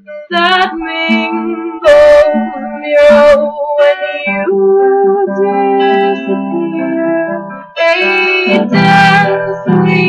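Strummed guitar chords in an instrumental break of a folk song, with sharp strums about two, three, eight and nine seconds in and held chords ringing between them.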